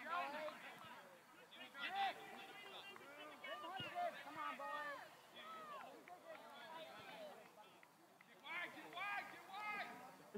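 Several voices shouting from players and sideline spectators, overlapping and unintelligible. The loudest shouts come about two seconds in and again near the end.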